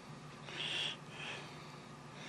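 Soft, airy breaths of a person working close to the microphone, over a low steady hum; the loudest breath comes just after half a second in.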